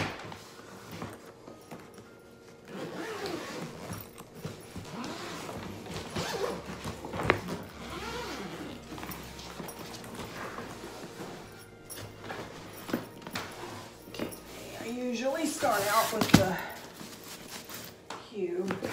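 A soft-sided wheeled suitcase being handled and opened on a stone countertop: scattered knocks and fabric rustling. There are a few low vocal sounds near the end.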